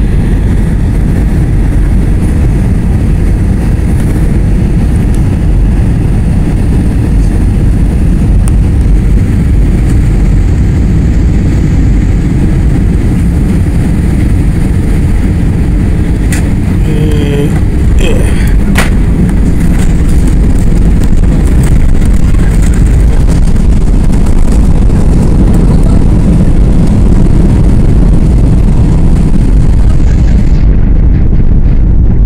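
Cabin noise of an Airbus A320-family airliner landing: a loud, steady low roar of engines and rushing air. A few sharp clicks and knocks come around touchdown, a little past halfway. The roar then grows slightly louder as the jet decelerates on the runway with its spoilers up.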